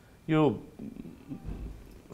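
Speech: a man says one short word with falling pitch, then pauses.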